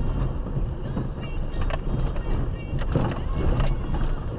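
Car interior noise while driving slowly on a rough street: a steady low engine and tyre rumble, with a couple of knocks from the cabin near two and three seconds in.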